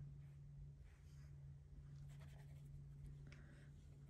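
Near silence: a steady low hum under a few faint, soft scratches of a watercolour brush touching cold-press paper, about one, two and three seconds in.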